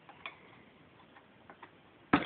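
Faint, sparse light clicks, a few irregular ticks over two seconds, from a toddler handling small plastic toys inside a plastic storage drawer.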